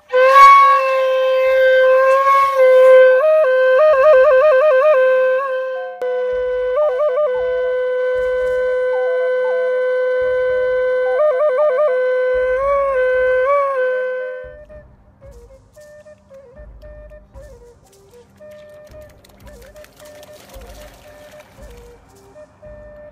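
A solo flute-like wind instrument plays a slow melody of long held notes broken by fast trills, stopping about fourteen seconds in. After it ends only faint low background noise remains.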